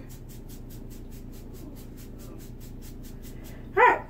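Rapid, even scratchy strokes of a toothbrush brushed through hair, about eight a second, fading out after a couple of seconds, over a low steady hum. Near the end, a short, loud, high-pitched cry.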